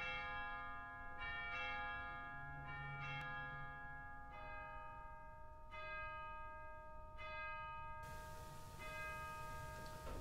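Bells ringing a slow series of strokes at different pitches, about one every second and a half, each left to ring on. The last stroke comes about seven seconds in and its ring fades away.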